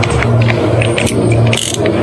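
Cordless drill spinning a paint-mixing rod in a plastic bucket, stirring a ceramic powder additive into a gallon of paint. The motor's steady hum dips briefly a few times as the trigger is eased, with scattered clicks and rattle from the rod in the bucket.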